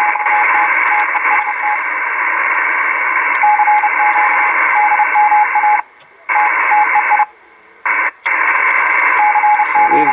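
Kenwood TS-450S receiver hiss from its speaker, with a thin whistle tone keying on and off. The hiss cuts out abruptly three times in the second half and comes back each time: an intermittent bad connection at the antenna connector's corner of the board.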